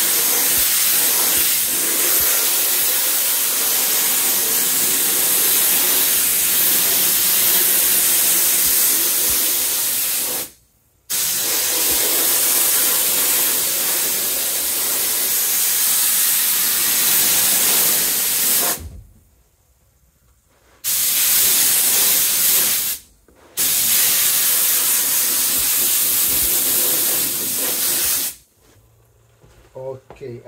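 Air-fed spray gun spraying glue onto a door panel board and padding: a loud, steady hiss in four long runs, cut off cleanly each time the trigger is released.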